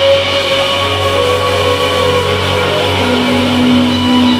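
Live indie rock band playing through a PA: electric guitars hold long ringing notes over bass and drums, the sound loud and steady.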